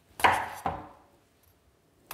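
Two sharp knife chops about half a second apart, each dying away quickly.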